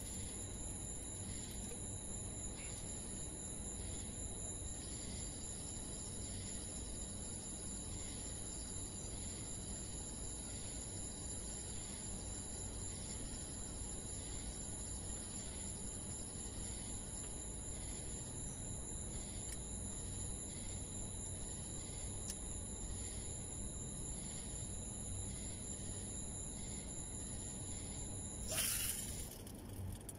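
Steady low background hiss and rumble with a constant thin high-pitched whine; a short rush of noise comes about two seconds before the end.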